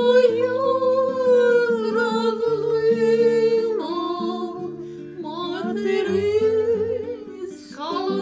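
Two women singing a slow song together to an acoustic guitar, the voices holding long notes with vibrato over picked guitar notes.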